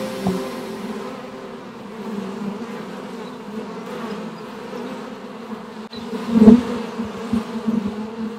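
Honeybees buzzing at the hive entrance, a steady hum of many wings. About six and a half seconds in, a bee passes close and the buzz briefly swells louder.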